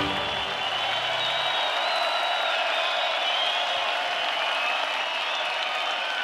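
A large concert crowd applauding and cheering, with high whistles over it, as the band's final chord dies away in the first second or so.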